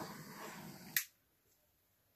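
Faint steady background hiss, broken by a single sharp click about a second in, after which the sound cuts off abruptly to near silence.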